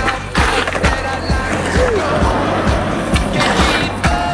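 Music with a steady beat, over the sound of a skateboard grinding a low rail and rolling on concrete.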